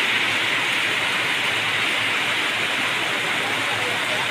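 Rain falling as a steady, even hiss.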